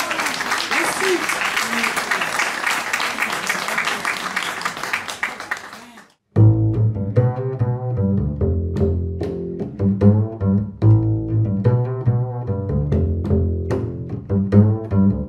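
Audience clapping as a jazz song ends. It cuts off suddenly about six seconds in, and after a brief gap, music with strong, deep bass notes begins.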